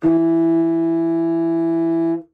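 Contrabassoon sounding a single long, steady A, played with its simplest fingering (index finger plus the top key). The note speaks easily and comfortably.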